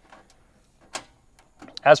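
A single sharp click about a second in, with a few faint ticks around it: the RV water heater's exterior access panel being pressed shut and latched.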